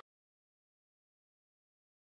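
Silence: the sound cuts out completely, with no room tone.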